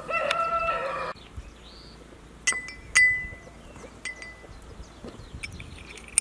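A rooster crows briefly in the first second. Then come sharp metallic clinks with a short ring: two about half a second apart midway and one more a second later, from a small brass mortar being tapped against a glass bowl to knock out ground saffron.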